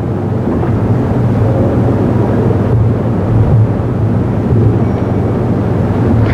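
Steady low rumble of room noise in a large conference hall, with no distinct events.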